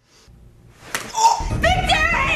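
A loud yell that starts about a second in and rises and falls in pitch.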